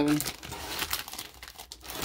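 Clear plastic comic-book bags crinkling and rustling as bagged comics are flipped through and lifted out of a short box.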